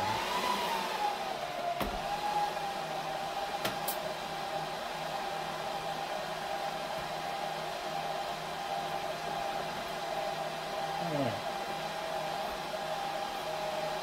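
Dell PowerEdge R730 rack server's cooling fans spinning up at power-on: a rising whine that peaks about half a second in, then settles into a steady fan whine and rush during boot. Two faint clicks come through near 2 and 4 seconds.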